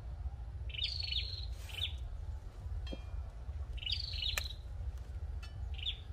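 A songbird calling in short, high chirping phrases, repeated three or four times, over a steady low rumble. There is a faint click about four seconds in.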